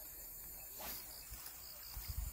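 Insects chirping in the grass: a faint, steady, high-pitched trill, with a brief soft whoosh about a second in.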